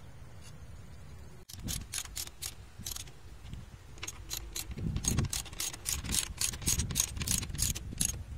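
Socket ratchet wrench clicking in short strokes as the bolts on a hand tractor's gearbox cover are tightened. The clicks begin about a second and a half in and come faster and louder in the second half.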